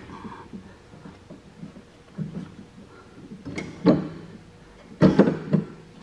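A rubber V-belt being worked by hand onto a mower's engine pulley, with low rubbing and handling noise and two short clunks, one a little under four seconds in and one about five seconds in, as the belt goes on.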